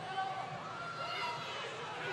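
Indistinct voices, fainter than the commentary on either side.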